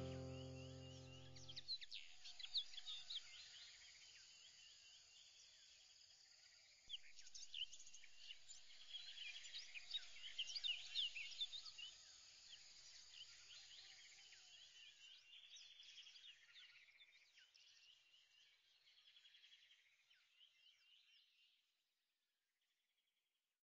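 Faint chirping of many small birds, thickest in the middle and fading out gradually until it stops just before the end. The last held chords of music die away in the first two seconds.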